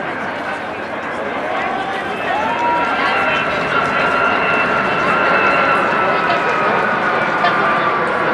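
Boeing 757-200 airliner on approach with gear down, its jet engines growing louder, a steady whine coming in from about three seconds in, over background chatter of voices.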